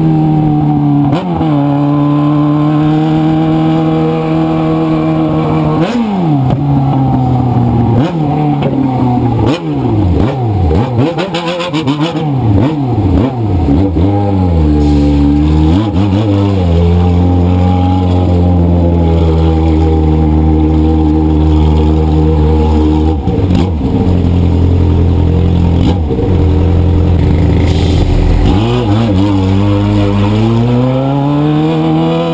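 Yamaha motorcycle engine heard from onboard, its pitch falling and rising with the throttle and gear changes. In the middle come several quick throttle blips; then it runs at a steady low note and picks up again near the end.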